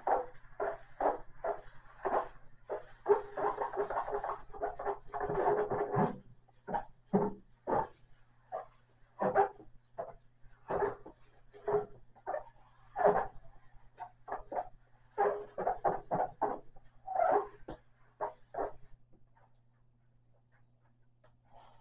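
Wet sponge scrubbing the enamel top of a gas stove in quick back-and-forth strokes, busiest in the first few seconds and then in separate rubs about one or two a second. A steady low hum sits underneath.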